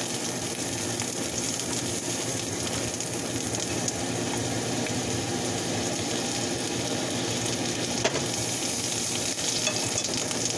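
Garlic butter sizzling as it melts in a frying pan on gentle heat, stirred with a fork, with a couple of sharp clicks about four and eight seconds in.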